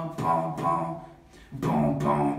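Solo a cappella beatboxing: one voice singing held, pitched notes that break off about a second in, then a hummed low note comes back with a percussive beat sound near the end.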